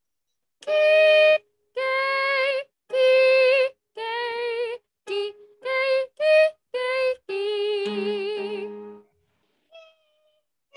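A high voice singing a line of separate held notes, each starting and stopping abruptly, heard through a video call. The last note, about seven seconds in, is held longer with vibrato.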